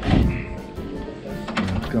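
Background music with steady tones, and a brief knock of wood on wood about the start, as the plywood companionway board and sliding hatch are handled.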